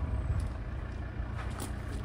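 Volvo XC90 D5's 2.4-litre five-cylinder turbodiesel idling with a steady low rumble, with a few light crunching footsteps on gravel.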